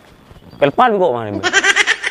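A pitched, wavering cry: it starts about half a second in, slides down in pitch, then jumps to a higher, quavering, bleat-like cry in the second half.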